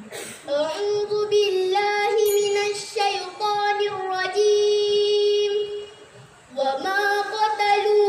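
A girl's solo voice singing unaccompanied, holding long notes with wavering ornaments and pausing briefly for breath about six seconds in.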